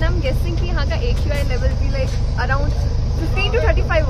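Voices talking over a steady low rumble.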